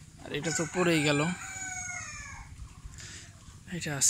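A rooster crowing once, a single call of about two seconds whose pitch falls away at the end.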